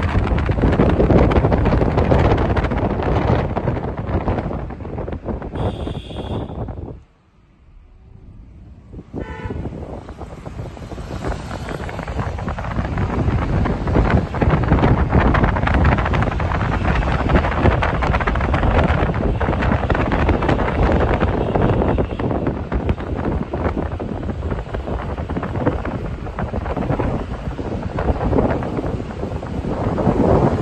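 Wind buffeting the microphone from a moving car, over road and engine rumble. A brief high tone sounds about six seconds in. The sound then drops almost away for a couple of seconds before the wind noise builds back.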